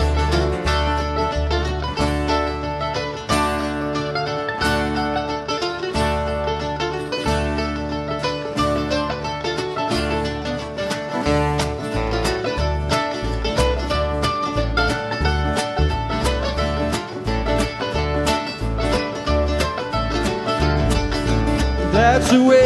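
Live acoustic string band playing an instrumental break: picked acoustic guitar lines over strummed guitar and a walking upright bass, with a steady rhythm and no singing.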